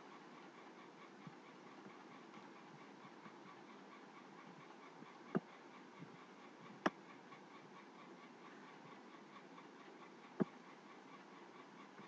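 Faint steady hiss with three sharp single clicks, about five, seven and ten seconds in: a computer mouse being clicked.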